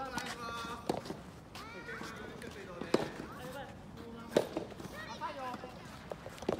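Indistinct voices of players chatting close by, with sharp pops of soft-tennis rackets striking the rubber ball about one, three and four and a half seconds in.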